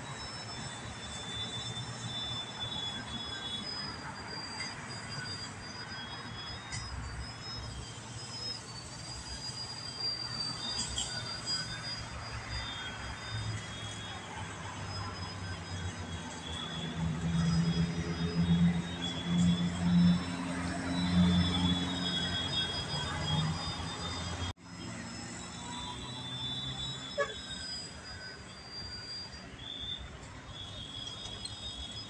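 Radio-controlled aerobatic model plane flying manoeuvres, its motor heard from the ground as a high whine that wavers in pitch with the throttle. It grows louder for several seconds past the middle as the plane comes closer.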